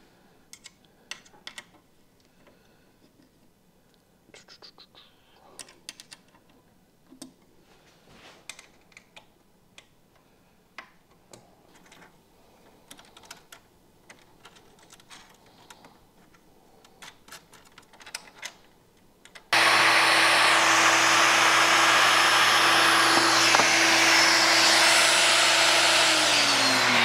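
Small clicks and taps of a router being fitted and screwed onto a board-mill carriage. About 19 seconds in, a router and dust extractor start abruptly, loud and steady with a low hum, as the router makes a first flattening pass over a twisted board.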